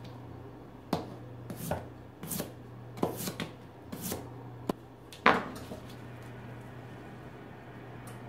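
Kitchen knife slicing raw potatoes thin on a plastic cutting board: about ten quick cuts, each ending in a knock of the blade on the board. The cutting stops about halfway through.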